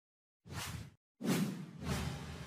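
Whoosh sound effects for an animated logo intro: a short swish about half a second in, then a louder, longer one from just over a second in.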